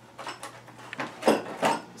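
A plastic blister pack holding a set of auger bits being handled and put down: three short rustling, clattering sounds.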